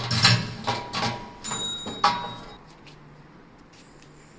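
Key turning in the lock of a steel locker and the metal locker door clattering open, a run of sharp clacks and rattles with a brief high tone about a second and a half in.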